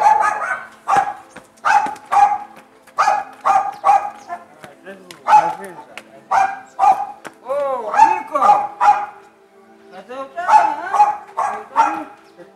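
A dog barking in a long run of short, sharp, high-pitched barks, about one or two a second, with a short pause near the end.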